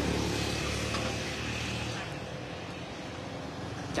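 A motor vehicle engine running with a steady low hum that fades about halfway through.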